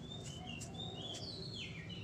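A small bird chirping: several short, high chirps, then a falling whistle about one and a half seconds in.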